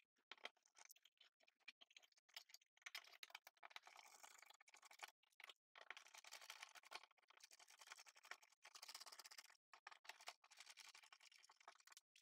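Near silence with faint scattered clicks and scratches: a screwdriver driving the receptacle's mounting screws into a metal electrical box.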